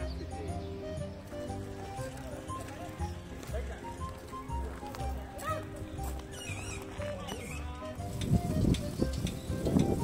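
Background music with a steady beat. About eight seconds in, a louder, uneven noise cuts in over it.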